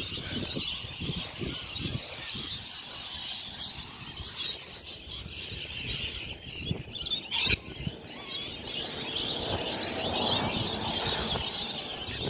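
Footsteps and handling of a phone while walking, with many birds chattering high in pitch in the background and a sharp click about seven and a half seconds in.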